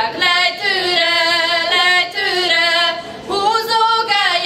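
A group of young female voices sings a Hungarian folk song in unison, with long held notes and ornamented turns in pitch. There is a short break for breath about three seconds in.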